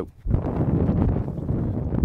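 Microphone noise: a low, rough rumble that starts suddenly about a quarter-second in and holds steady, as loud as the speech around it, while the mic's wearer moves about.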